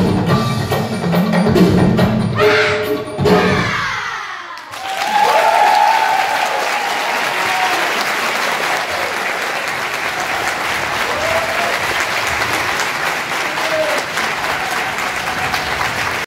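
Percussive dance music ends with a falling sweep about four seconds in. Steady audience applause follows for the rest of the time.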